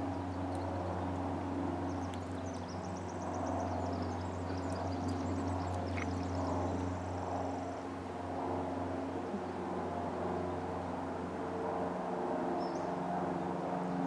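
A steady low mechanical hum, like a distant engine, runs throughout. From about two to eight seconds in, a small songbird sings a rapid, high-pitched trill over it.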